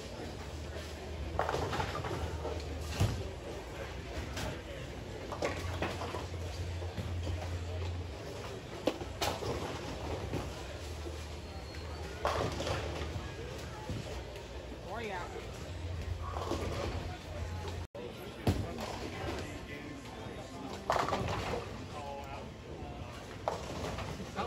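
Bowling alley ambience: background music with a steady bass line and people talking, broken by several sharp knocks of balls and pins on the lanes.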